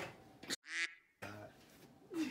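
A single short quack, like a duck call sound effect, dropped into a moment of dead silence about half a second in.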